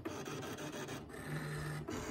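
Brother ScanNCut DX230 digital cutting machine running: its motors move the cutting mat and blade carriage while it cuts fabric appliqué shapes, a steady mechanical scraping with a low motor hum about halfway through.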